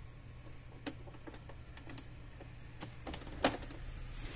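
Scattered small plastic clicks and knocks as a USB cable's plug is pushed into the USB port of an Epson EcoTank L495 printer and the cable is handled, with the loudest click about three and a half seconds in.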